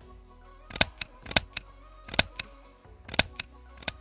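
Kitchen shears snipping through shower curtain fabric: several sharp, separate clicks at uneven intervals, over quiet background music.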